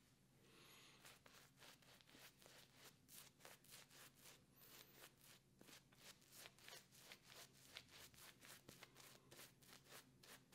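Faint, quick brushing strokes of a synthetic-knot shaving brush working hard-soap lather into five days of beard stubble, about four strokes a second.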